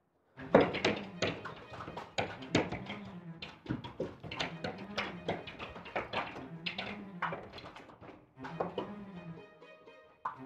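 Hands banging and slapping on glass doors: many rapid, irregular knocks, the loudest about half a second in. Underneath, low bowed strings of the film's score swell and fall every second or two.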